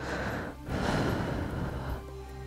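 A person breathing close into a headset microphone: two breaths, a short one and then a longer one after a brief pause.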